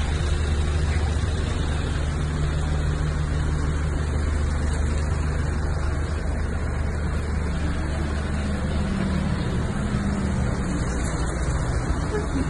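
A loud, steady low rumble of background noise with no distinct events.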